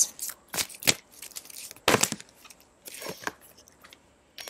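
Oracle cards being handled and drawn from a deck, a few short papery snaps and rustles spaced over the seconds.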